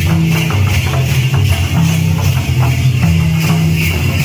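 Mundari folk wedding dance music: drums beating a steady, repeating rhythm with jingling, rattling percussion over them.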